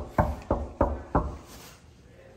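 Knocking on a wooden door: four knocks in quick succession, about three a second, ending about a second and a quarter in.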